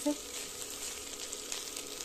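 Chopped French beans sizzling as they are fried in a little oil in a wok, with small crackles and the scrape of a wooden spatula as they are stirred. The beans are being dry-roasted without water to finish the dish dry.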